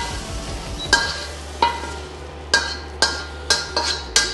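Metal spatula scraping and knocking against a wok as fried bacon and aromatics are pushed out into a bowl, with about half a dozen ringing metallic clinks starting about a second in, over a fading sizzle.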